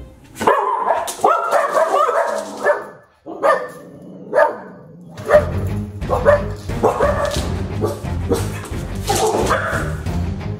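Dogs barking in an irregular run of sharp barks, alarm barking at a stranger in a Labrador mask whom they don't recognise. A low music bed comes in about halfway through.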